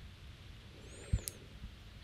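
Quiet room tone with one soft click about halfway through, typical of a computer mouse button being pressed.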